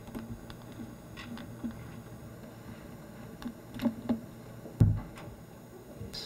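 Room tone with a low steady hum and a few scattered soft clicks from operating a computer mouse. There is one louder, dull thump about five seconds in.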